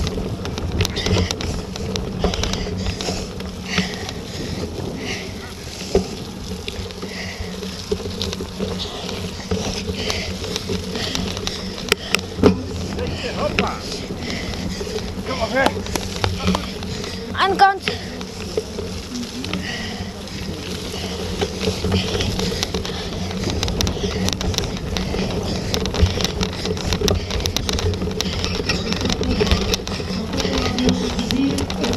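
Bicycle being ridden over bumpy grass and mud, heard close up: a steady rumble and rattle, with a few sharper knocks about halfway through. Faint voices in the distance.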